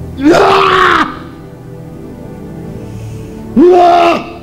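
A man wailing loudly twice, each cry rising then held for under a second, the second near the end, over soft background music. The cries come from a man being prayed over in a deliverance session.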